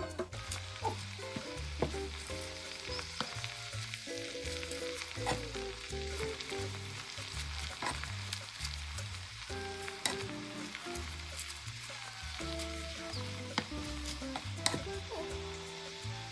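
Fresh spinach leaves sizzling in a hot frying pan as they are stirred with a wooden spoon, with frequent light clicks and scrapes of the spoon against the pan. Background music plays underneath.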